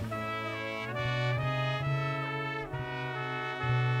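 Jazz big band playing, its trumpet and trombone section sounding a line of chords that change about every half second over a steady low bass note.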